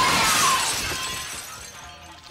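A large glass window pane shattering and its pieces falling, loud at first and fading steadily away.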